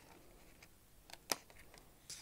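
Child-safe scissors cutting through folded paper: a faint click, then one sharp snip a little over a second in.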